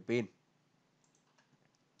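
A few faint computer-mouse clicks in the second half, after a spoken word at the very start.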